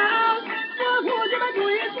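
Beijing opera music from an old, narrow-band recording: a voice-like melodic line that slides and dips in pitch several times, over accompaniment.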